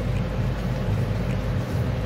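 Electric fan running with a steady low hum and a faint constant tone.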